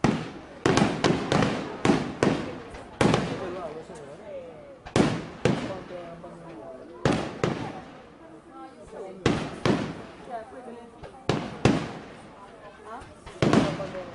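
Aerial firework shells bursting in rapid succession: about twenty sharp reports in quick clusters, each trailing off in an echo.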